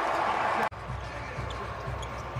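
Basketball game court sound: arena noise that cuts off abruptly less than a second in, then a quieter stretch of a basketball being dribbled on the hardwood court.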